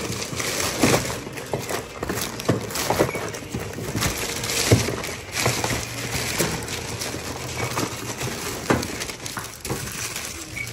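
Plastic carrier bags rustling and crinkling as shopping is packed, with repeated knocks of boxes set down on a stainless steel counter.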